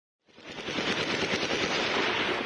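Rapid automatic gunfire, the shots running together, fading in over the first half second and then holding steady.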